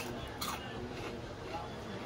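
A bite into a crispy, crunchy fried lentil pakora, one faint crunch about half a second in, then quiet chewing.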